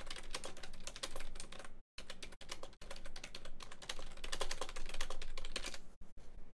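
Typing on a computer keyboard: fast, continuous keystrokes with a brief pause about two seconds in.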